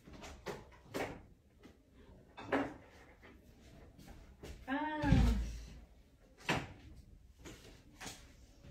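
Off-camera handling noises while things are fetched: scattered knocks and clatter, and about five seconds in a short creak that rises and falls in pitch together with a low thump, the loudest sound here.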